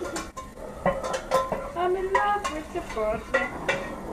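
Metal fork clinking and scraping against a plate while twirling spaghetti: a string of small, irregular clicks and taps.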